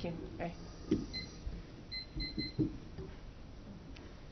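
A few soft thumps from a table microphone being handled, with several short, high electronic beeps: one about a second in, then three in quick succession about two seconds in.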